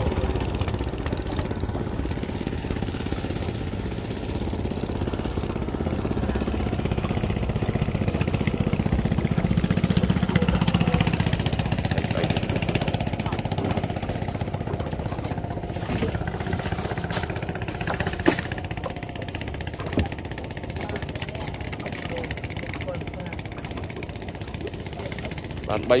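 A small boat engine running steadily, growing louder toward the middle and then easing off, under people talking.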